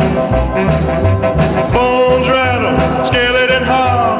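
A 1958 45 rpm record playing: a steady beat under melody lines that swoop up and down in pitch.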